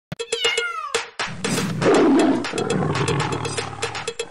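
A domestic cat meowing with a falling pitch, then a louder, longer cry about two seconds in, dubbed in place of the MGM lion's roar. Steady clicking percussion runs underneath.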